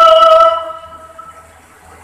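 A man's voice holding one long sung note through a public-address system, breaking off about half a second in, its echo dying away in the hall. After that only faint steady hum from the sound system remains.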